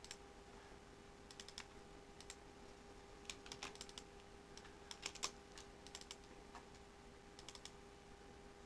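Faint computer keyboard keystrokes and mouse clicks in short clusters, over a faint steady hum.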